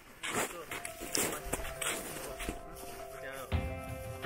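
Indistinct voices talking while background music fades in with steady held notes. About three and a half seconds in, the outdoor sound cuts off and only the music remains.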